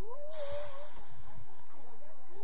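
One drawn-out, high-pitched shout from a person on or beside the pitch, rising at the start and then held for just under a second, over faint background chatter.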